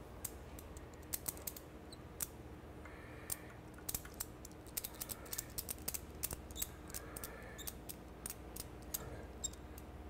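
Light, irregular clicks and ticks of a retaining strap and its buckle hardware being fitted and snugged by hand around an aircraft integrated drive generator on its lift fixture, over a faint steady hum.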